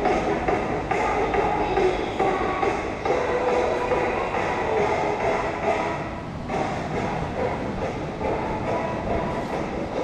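Background music playing continuously, with no speech.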